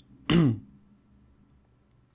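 A man's single short vocal sound, falling in pitch, about a quarter second in, a throat-clear-like noise rather than a word; faint room tone follows.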